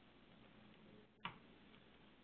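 Near silence with one short click a little over a second in: the click that advances a presentation slide.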